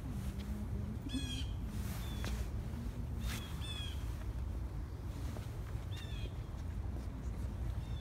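Birds calling outdoors: short, harsh calls every two to three seconds, over a steady low rumble.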